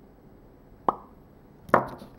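Two short, sharp plopping clicks, a little under a second apart, the second slightly louder, each dying away quickly.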